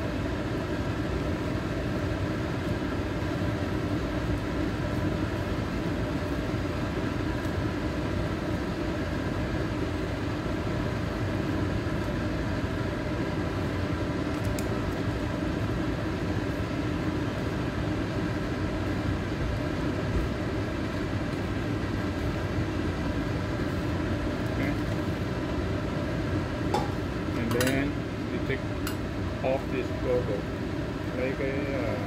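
Beef broth boiling hard in a carbon-steel wok over a gas burner: a steady rushing noise with a steady hum underneath. Near the end, a few clicks of utensils against the wok.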